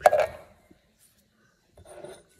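A single sharp knock with a short tail as a hand grips and handles a metal food can.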